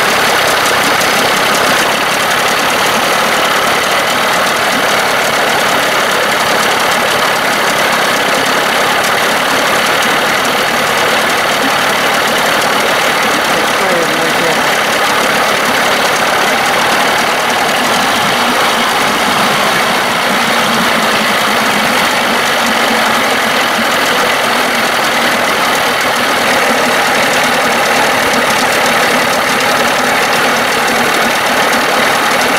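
Evinrude 25 hp two-stroke outboard engine running steadily just after a cold start, with its thermostat fitted and still warming up toward opening.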